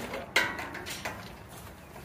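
Footsteps of people walking out of a barn onto grass, with one sharp knock about a third of a second in and a few lighter steps after it.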